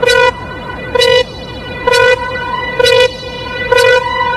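Fidget house dance track: a loud horn-like pitched stab hits five times, about a second apart, over a steady held tone and repeated falling synth sweeps.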